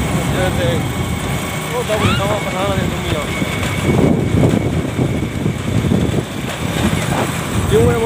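Wind rumbling on a phone microphone, gusting stronger about four seconds in, with a few words of a man's voice.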